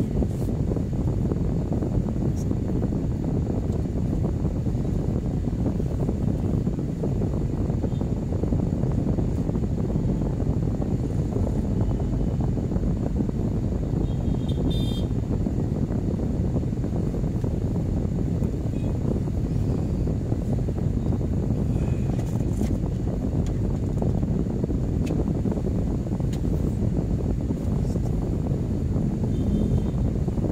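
Steady low rumble inside a car's cabin while it waits in traffic: the engine idling, with the motorcycles and traffic around it. A few faint short ticks come around the middle and near the end.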